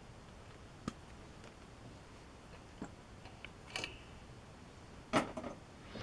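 A few faint clicks and taps of small plastic model-kit parts being handled, spaced a second or so apart, with a louder clatter near the end.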